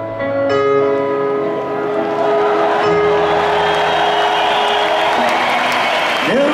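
Live concert music: sustained keyboard chords held and changing slowly, with crowd applause and cheering swelling in about three seconds in.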